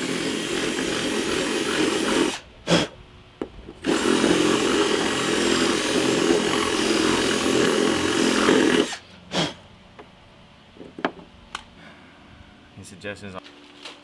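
Power drill boring holes through a carbon fiber front splitter. It runs for about two seconds, stops briefly, then runs again for about five seconds before cutting off, followed by a few light clicks and knocks.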